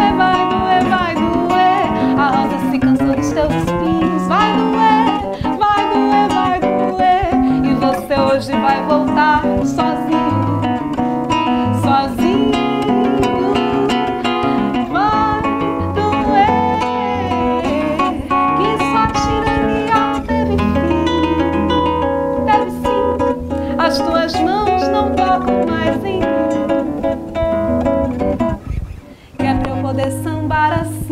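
A classical acoustic guitar played live, plucked and strummed, accompanying a woman singing a Brazilian popular song. The music dips briefly near the end.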